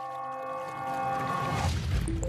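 A tuning fork's steady ringing tone with a rich set of overtones, holding one pitch; near the end it fades out as a low rushing whoosh builds.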